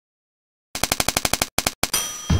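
After a short silence, a rapid, even rattle of sharp clicks, about twelve a second, starts about three quarters of a second in and breaks off twice near the end.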